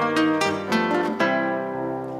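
Plucked-string music: a quick run of picked notes, the last ones left ringing and fading in the second half.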